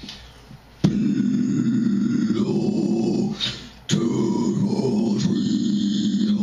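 Low, guttural extreme-metal vocal growls into a handheld microphone. There are two long growls of about three seconds each, each starting abruptly.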